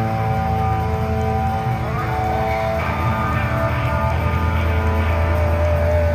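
Live rock band playing: electric guitar and electric bass with drums, the instruments holding long sustained notes.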